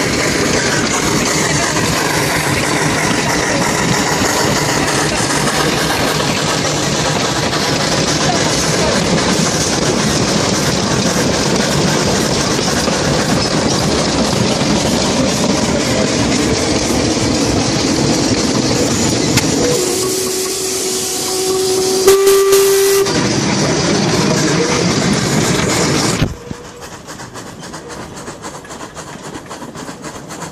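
Steam locomotive heard from its footplate: a loud, steady rush of steam and running noise. About twenty seconds in, its steam whistle sounds for about three seconds, one steady tone. The rush cuts off suddenly a few seconds later, leaving a much quieter background.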